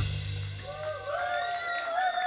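A live celtic-rock band with drum kit and cymbals hits its final note and stops abruptly, the low notes ringing out and fading over about half a second. Faint, long gliding and wavering tones follow.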